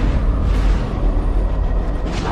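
Cinematic trailer boom: a sudden hit at the start, then a heavy, deep rumble, with music underneath.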